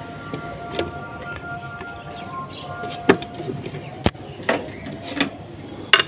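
Small knife cutting green chillies directly on a ceramic plate: irregular clicks and clinks of the blade striking the plate, the sharpest about three and four seconds in.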